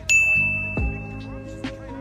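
A bright, high ding sounds right at the start and rings for about a second and a half before fading, over hip-hop music with deep bass notes that drop in pitch.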